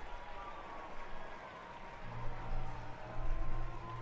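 Ballpark crowd cheering and clapping in a steady wash of noise, reacting to a run-scoring base hit.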